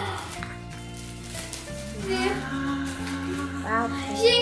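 Background music with long held notes, and brief voices breaking in around the middle and again just before the end.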